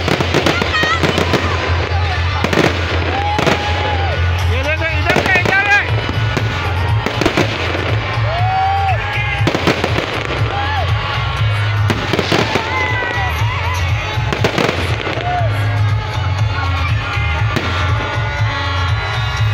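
Aerial fireworks bursting in quick succession throughout, with repeated bangs and crackling. They go off over loud music with a steady heavy bass and voices shouting from the crowd.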